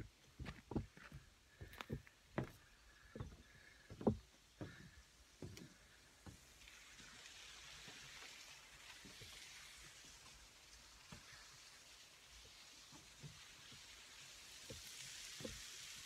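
Irregular footsteps and knocks on wooden deck boards for the first several seconds, then a faint steady rushing hiss that sets in about six seconds in and lasts to the end.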